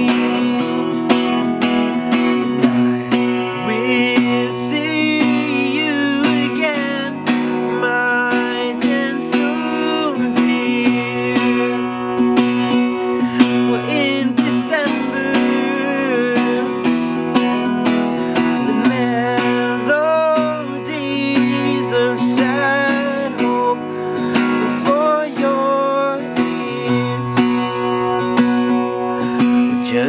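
Acoustic guitar playing an instrumental passage of a slow song, with a quick, steady run of struck chord notes ringing over a held low note.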